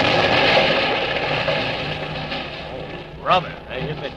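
Radio-drama sound effect of a large explosion, an ammunition dump blown up by tank fire: a loud noisy rush that fades away over about three seconds, over a low steady rumble. A man's voice comes in near the end.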